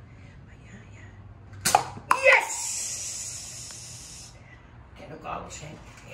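A toy dart blaster being fired: two sharp snaps about half a second apart, followed by a high hiss lasting about two seconds.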